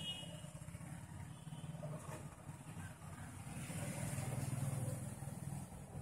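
A faint low rumble that swells from about three seconds in, is loudest near the five-second mark and drops away at the end, with a light hiss above it.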